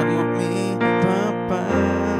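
Piano playing chords, with several notes struck in turn and a new low bass note coming in near the end.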